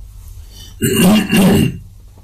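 A man clearing his throat: one short, rough burst in two pushes, about a second in.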